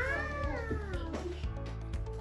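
A single long meow-like call that rises and then falls in pitch, heard over steady background music.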